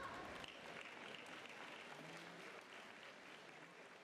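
Audience applauding, faint and slowly fading away.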